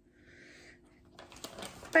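Rigid clear plastic food tray being handled on a tabletop: faint rustling, then from about halfway a run of small clicks and crackles of the plastic.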